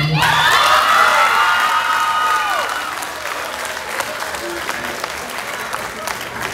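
Audience applauding and cheering as a song ends, with long high-pitched cheers in the first three seconds. The applause then eases off.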